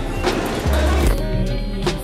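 Background music with a heavy bass line and a few sharp beats.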